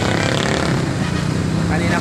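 Motorcycle engine of a tricycle running steadily, with a man's voice over it.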